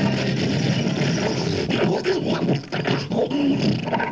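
Rough, growling vocal noises made with a hand cupped over a microphone at the mouth, amplified and mixed into a dense, noisy electronic drone.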